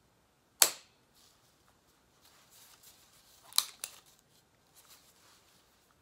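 A hyaluron pen, a spring-loaded needle-free injector, firing with a sharp snap as it shoots hyaluronic acid filler into the skin of the chin. The first snap comes just over half a second in; the second, about three and a half seconds in, is followed at once by a softer click, with faint rustling between.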